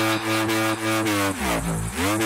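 Instrumental break of an electronic trap/dance track: one buzzy synth note that holds its pitch, slides down about a second and a half in, then slides back up near the end, chopped by short rhythmic dips in level. The gliding pitch sounds rather like an engine revving.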